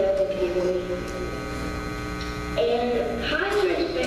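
A steady electrical hum from a sound system, under a girl's voice played back through loudspeakers, heard near the start and again in the last second and a half.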